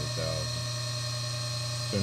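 A short spoken syllable just after the start, then a steady low hum through the pause.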